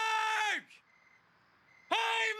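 A man's cartoon voice ending a long, drawn-out yell of "No!" held on one pitch, which dies away about half a second in. After a short quiet gap, a second long yell starts near the end.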